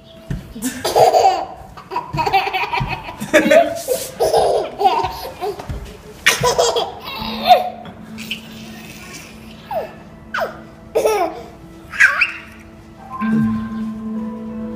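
Laughter in repeated bursts, a toddler's laughter among it, through the first half; then a few short squeals falling in pitch over a steady background tone.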